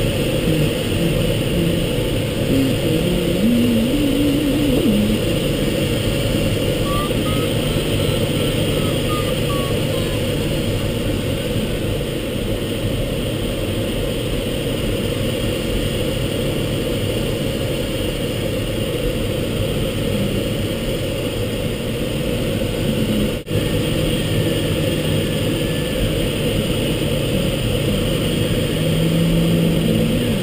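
Steady rush of air around a Mini Nimbus sailplane's canopy and fuselage, heard from inside the cockpit in gliding flight, with a momentary dropout about two-thirds of the way through.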